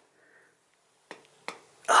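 About a second of dead silence, then two short sharp clicks about half a second apart from working the hand grease gun on the wheel hub's grease fitting. A short exclaimed voice follows near the end.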